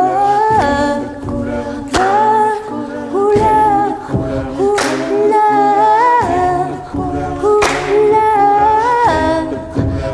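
Wordless a cappella singing by a mixed choir, with voices holding and gliding between chords. A sharp accent cuts in about every three seconds.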